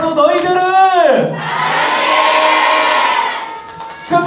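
A stage full of young children shouting and cheering together. About a second in, a voice slides steeply down in pitch, and the group shout fades near the end.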